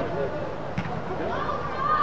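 Scattered voices of spectators and players, with one drawn-out call starting about a second and a half in.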